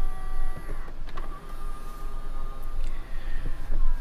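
Power-folding side mirrors of a 2022 GMC Sierra Denali, their small electric motors making a steady whine that stops with a click just under a second in, then starts again about a second in and runs until just before the end.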